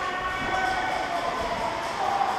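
Ice rink ambience, echoing in the arena: distant voices of spectators and players over a steady background din.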